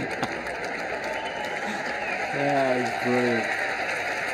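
Tennis stadium crowd noise, a steady hubbub, with a man's voice sounding twice a little past the middle, each time for about half a second.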